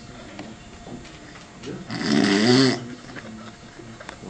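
A man laughing: one loud, rough burst of laughter about halfway through, lasting under a second.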